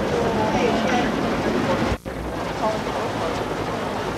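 Indistinct voices over a steady wash of street noise, rough and noisy like an old recording. There is a brief sharp gap about halfway through, where the sound cuts.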